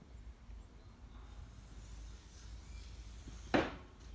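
Faint, wet handling sounds of a fingertip rubbing alcohol into tree sap on a car's painted door, with one short, louder noise about three and a half seconds in.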